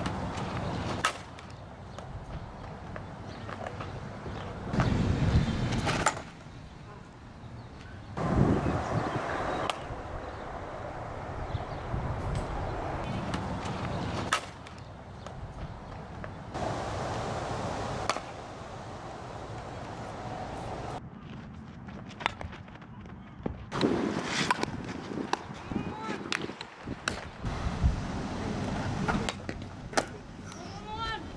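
Sharp cracks of a softball bat hitting pitched balls, several times over a series of short clips whose outdoor background noise changes abruptly at each cut.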